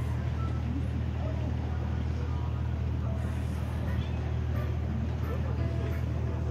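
Steady low drone of a wooden tourist ship's engine running, with faint voices of people on deck.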